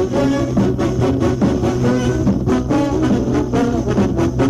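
Background music: a brass band playing a lively tune over a steady percussion beat.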